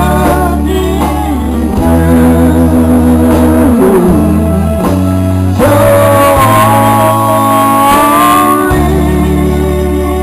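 A man singing a slow country song over guitar and bass accompaniment, with one long held note in the second half.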